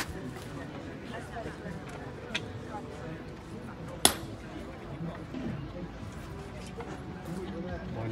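Faint voices of people talking in the open air, with a single sharp click about halfway through, the loudest sound here, and a couple of softer clicks before it.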